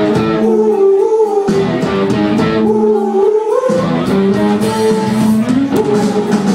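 A rock band playing live, with electric guitar, keyboard and drums and a voice singing, recorded from within the audience.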